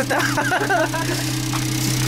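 Suzuki Alto's 660 cc three-cylinder engine idling with a steady, even low hum.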